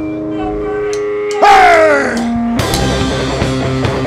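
Rock band music: held tones, then about one and a half seconds in a loud note that slides down in pitch, and a little past halfway the full band comes in with drums.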